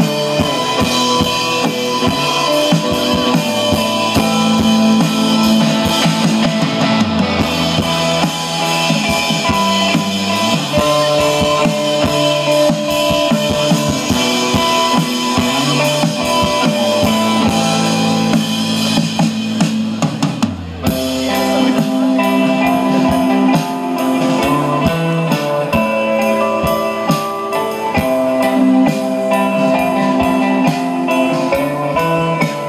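Live indie dream-pop band playing: drum kit and guitars. The sound thins out briefly about two-thirds of the way through before the full band comes back in.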